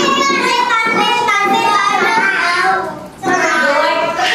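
Young children singing a song, with a short pause just after three seconds in.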